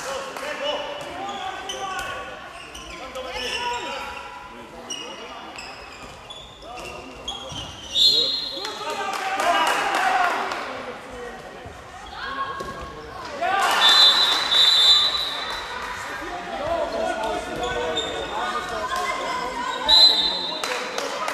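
Handball match play in a sports hall: the ball bouncing on the court floor amid voices of players and spectators calling out, echoing in the large hall. Brief high-pitched squeaks stand out about eight and fourteen seconds in.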